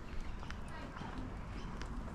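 Outdoor ambience: faint, short bird chirps over a low wind rumble on the microphone, with light ticks of footsteps on pavement.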